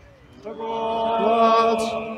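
Slow outdoor singing on long, held notes: a phrase begins about half a second in and fades out near the end.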